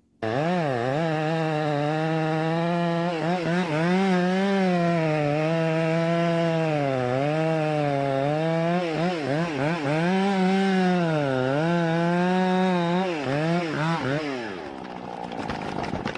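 Two-stroke chainsaw running at high revs as it cuts into the trunk of a large notched tree, its pitch dipping and recovering again and again as the chain loads in the wood. The engine sound drops away about fourteen and a half seconds in, leaving a rougher, noisier sound.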